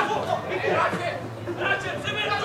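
Indistinct chatter of several voices talking and calling out at once, with no clear words.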